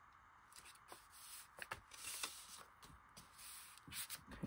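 Faint rustling of paper being handled and pressed flat onto a journal page, with a few light taps.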